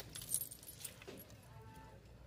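Hangers clicking and scraping on a metal clothing rack as shirts are pushed along, with a metal chain bracelet jingling. A few light clicks and a short jingle come in the first half-second, then quieter clatter.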